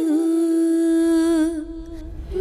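A female singer holds one long, steady note that fades out about one and a half seconds in, with a low rumble rising beneath it near the end.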